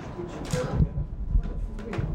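Indistinct low voices of people close by, mixed with a few dull bumps and rustles.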